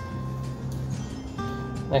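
Soft background music: sustained notes, with a change of notes about two-thirds of the way through.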